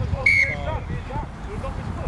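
A referee's whistle gives one short, high blast about a quarter second in, over faint shouting voices and a low rumble on the microphone.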